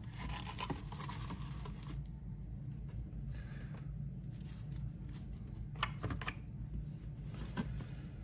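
Trading cards and a cardboard box being handled on a wooden tabletop: rubbing and sliding, busiest in the first two seconds, with a few light taps in the second half. A low steady hum runs underneath.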